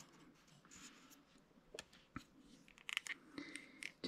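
Faint handling sounds of a small model ship and its clear plastic display stand: light rustling and scattered small clicks, with a cluster of clicks in the second half.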